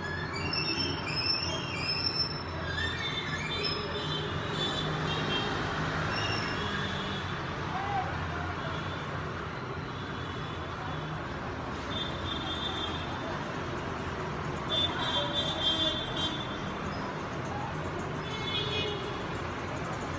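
Background traffic noise: a steady low rumble with scattered short, high tones, including a cluster of them about three quarters of the way through.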